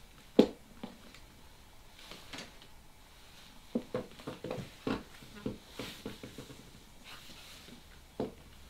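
High-heeled mules being slipped off and set down on a wooden floor: one sharp knock about half a second in, then a run of short clicks and knocks a few seconds later.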